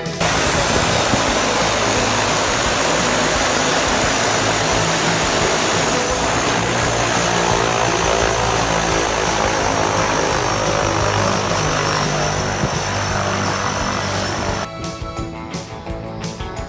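Single-engine floatplane running close by: a loud steady roar with a faint high whine that slowly sinks in pitch. About a second before the end it gives way to music.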